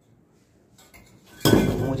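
Metal snake-hook rod poking among loose fired-clay bricks: a few faint clicks, then one loud clank about a second and a half in as rod and bricks knock together.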